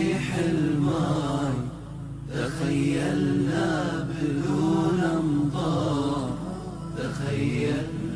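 Nasheed music: a male voice chanting a long, wordless melismatic melody over a steady low drone, in two phrases with a short dip between them.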